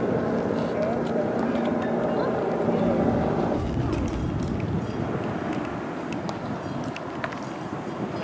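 Vehicle engines running with indistinct voices over a rough, noisy background.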